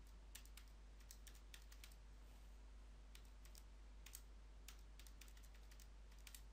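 Faint, irregular clicking of calculator keys being pressed, about fifteen key presses in quick, uneven runs.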